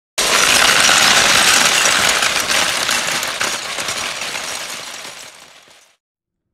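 A loud, dense mechanical rattling that starts suddenly and then fades away over about five seconds.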